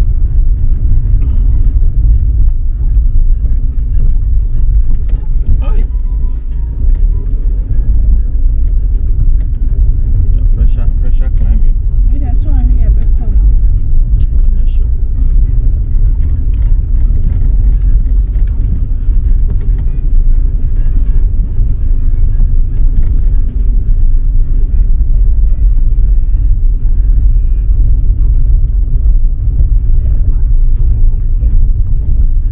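Car driving on an unpaved dirt road, heard from inside the cabin: a loud, steady low rumble of tyres and engine.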